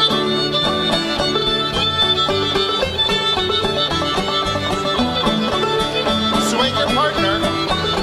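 Live contra dance band playing a lively tune, a fiddle leading over plucked-string accompaniment with a steady driving beat.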